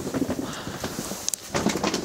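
Footsteps and shuffling over a debris-strewn wooden attic floor: a string of irregular light knocks and crackles.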